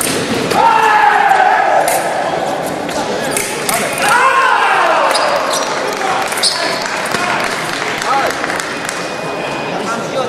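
A foil fencing bout in a large, echoing hall: fencers' feet stamp and squeak on the piste with scattered sharp clicks, and two long, falling voice calls come about a second in and about four seconds in.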